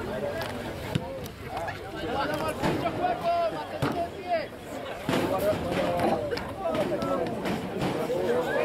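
Several voices shouting and calling over one another on an open rugby field, the on-pitch and touchline calls of a match in play, with no clear words.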